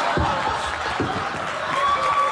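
A coconut slammed down hard twice, two heavy thuds about a second apart, as a bare-handed attempt to smash it open. A studio audience cheers and whoops throughout.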